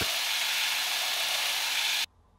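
Belt grinder running with a steel knife tang held against the belt: a steady grinding hiss that cuts off suddenly at the end.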